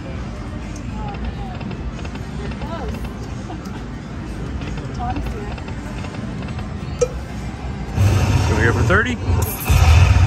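Aristocrat Lightning Link slot machine sounds over casino background noise: faint chimes and one sharp click during the spins, then, about eight seconds in, a louder rumble with sweeping, gliding tones as the machine's lucky chance spin feature triggers.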